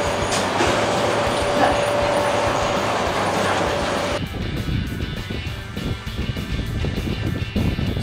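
A construction-site material lift (hoist) running after its control button is pressed: a steady mechanical noise with a thin, steady whine. It cuts off abruptly about four seconds in.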